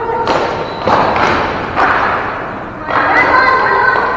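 Ball hockey play in a gymnasium: four hard thumps and clacks from sticks and ball, each echoing off the hall's walls.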